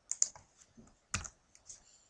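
Scattered sharp computer clicks: a quick cluster near the start and a louder single click about a second in, with a few softer ones after.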